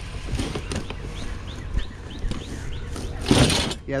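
Cardboard box of scrap metal parts being handled and set down in a pickup truck bed, with a loud brief clatter about three seconds in, over a steady low rumble. A quick series of short, high falling chirps sounds in the background before it.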